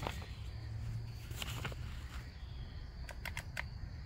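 Faint outdoor background with a few light clicks, a pair about one and a half seconds in and a quick run of several near the end, from a battery mini chainsaw and its hard plastic carry case being handled. The saw is not running; it has no battery in yet.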